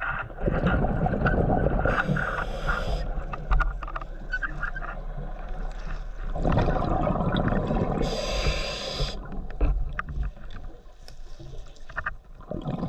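A scuba diver's open-circuit regulator breathing underwater: two breaths about six seconds apart, each a long rumble of exhaled bubbles with a short sharp hiss from the regulator.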